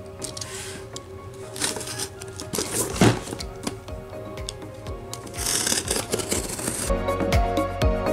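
Background music over a utility knife slicing through packing tape on a cardboard case: several scratchy cuts, with a sharp crack about three seconds in. A steady drum beat comes into the music near the end.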